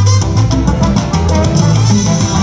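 Dance music mixed live on a Denon DJ controller, playing loud with a heavy bass line and a steady drum beat.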